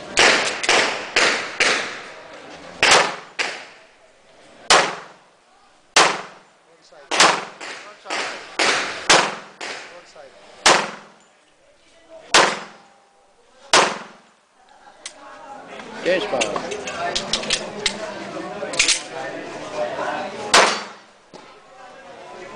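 Semi-automatic pistol fired in a fast string of about twenty shots, several in quick pairs, with pauses of a second or more between groups; each shot leaves a short echo. Two more shots come near the end, and voices are heard between them.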